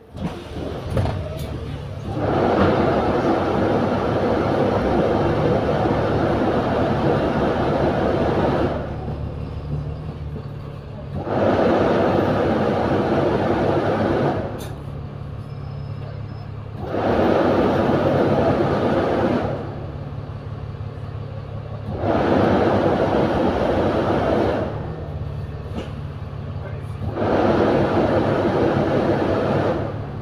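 A bus engine runs steadily at low speed. Over it, a louder rushing noise comes and goes about five times, in spells of a few seconds with short gaps.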